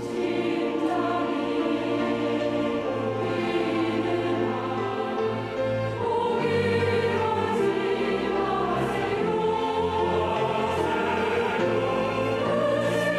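Church choir singing a slow hymn in Korean, with strings including a cello accompanying. The choir comes in at the start and swells into a fuller passage about halfway through.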